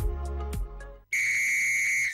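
Advertisement music with a steady beat fades out in the first second. After a brief gap, a loud, steady, high-pitched whistle-like tone opens the next advertisement's jingle.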